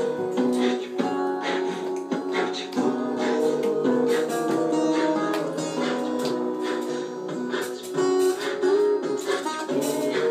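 Electric or acoustic guitar played through a Boss loop pedal: strummed and plucked guitar parts layered on one another, the notes changing throughout.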